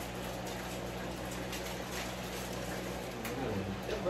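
Food cooking in a pan on a stovetop burner, a steady even hiss with faint crackles, over a low steady hum.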